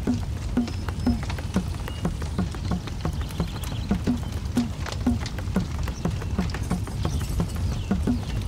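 A steady percussive beat, about two short low thuds a second, over a constant low rumble with scattered sharp clicks.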